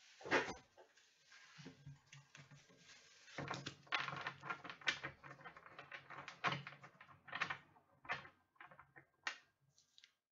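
Trading cards and their packaging being handled and cleared off a table: a run of clicks, taps and rustles, with the sharpest knock about half a second in and a dense stretch from a few seconds in until near the end.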